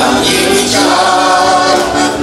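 A man singing a Slovak folk song to his own heligónka, a diatonic button accordion, playing steady chords.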